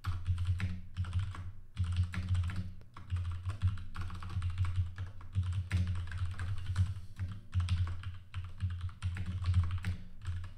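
Typing on a computer keyboard: a fast, uneven run of key clicks in bursts, with short pauses between them.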